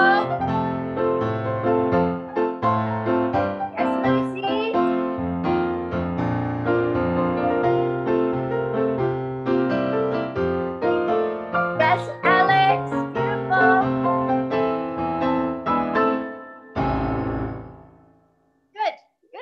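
Live piano playing a continuous accompaniment of quick notes and chords for a ballet jumping exercise, closing on a held chord near the end that fades away.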